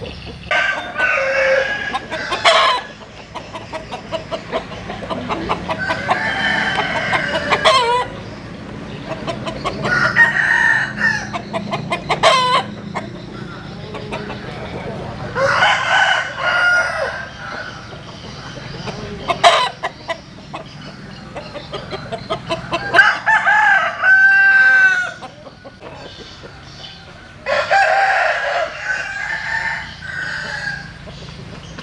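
Gà chuối roosters, a Vietnamese crossbred chicken, crowing over and over: about seven loud crows, each around two seconds long, a few seconds apart.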